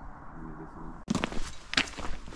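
A hiker's footsteps on a dry grassy, stony trail: a few sharp crunching steps in the second half, after a quieter first second.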